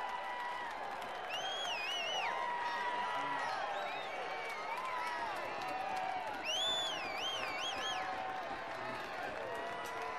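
Many voices shouting and calling across a football pitch at once, with two high, wavering shouts standing out, about a second in and again past the middle.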